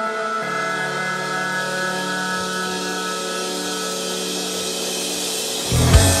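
Rock song intro: sustained chords held steady at a moderate level. Just before the end the drums and full band come in with a loud hit.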